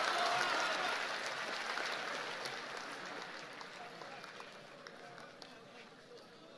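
Audience applauding, the clapping fading away over a few seconds, with some crowd murmur.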